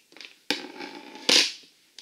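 Scissors cutting through a strip of self-fusing rubber repair tape, with a sharp snip about half a second in. A louder, short clatter follows about a second later as the scissors are set down on the table.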